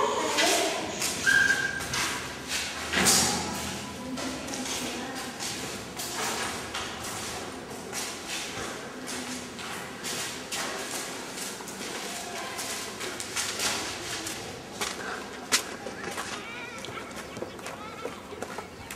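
Indistinct children's voices chattering and calling, with many footsteps and knocks as children move through a corridor and out into a yard. The sound is louder in the first few seconds, then quieter.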